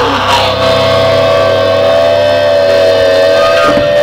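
Electric guitar feedback through a rock band's amplifiers: one long, steady, slightly wavering tone that starts about half a second in as the song ends. A low bass hum under it dies away about a second and a half in.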